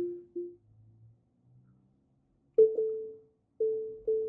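Tesla Model Y park-assist proximity chime warning of an obstacle about 30 inches ahead. Two short, lower beeps come at the start, then after a pause of about two seconds higher beeps sound about a second apart, each fading out.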